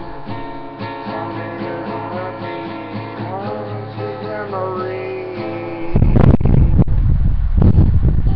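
Acoustic guitar playing an instrumental passage with a melody that bends in pitch, no singing. About six seconds in the music turns much louder and deeper, with sharp knocks.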